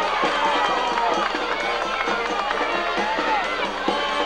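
Football crowd of spectators talking and shouting over one another, with band music underneath.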